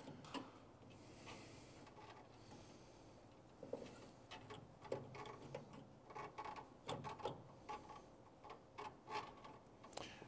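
Faint, scattered light clicks and knocks of a coilover shock absorber and its hardware being handled and fitted into the front suspension mounts, coming more often from a few seconds in.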